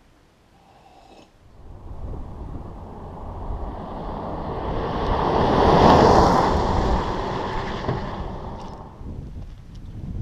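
Toyota Tacoma pickup driving past on a gravel dirt road: tyre and engine noise builds from about a second and a half in, peaks about six seconds in as it passes, then fades, with wind on the microphone.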